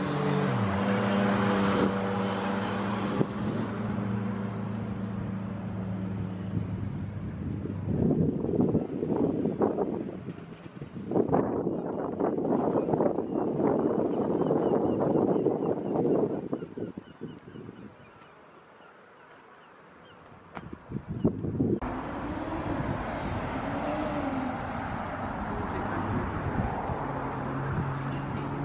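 Roadside outdoor noise. A vehicle engine hums steadily for the first few seconds. Louder noisy rushes of passing traffic and wind on the microphone follow, then a short quiet lull about two-thirds through, and the sound changes abruptly to steady background noise for the last few seconds.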